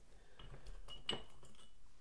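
Cardboard game counters being picked up and shuffled on a board game map, with a few light clicks and a short clink about a second in.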